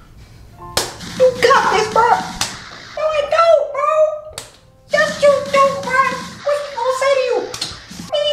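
A young man's voice vocalising wordlessly over background music, with a few sharp slaps or claps.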